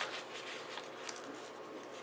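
Faint rustling of a paper sticker sheet being handled and flexed, with a few soft crinkles in the first second.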